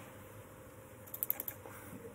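A quick burst of about five computer keyboard keystrokes about a second in, over faint room tone.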